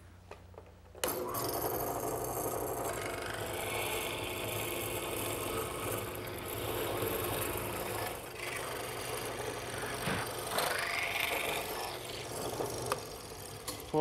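Drill press with a hollow-chisel mortising attachment running and boring square mortises into a teak rail; the drill bit cuts the hole while the square chisel pares it square. It starts about a second in and runs steadily, its pitch and level shifting as the chisel is plunged and lifted.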